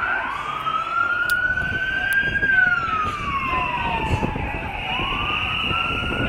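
A siren wailing in a slow rise and fall, each glide taking about two and a half seconds, climbing again near the end, over the steady noise of a marching crowd.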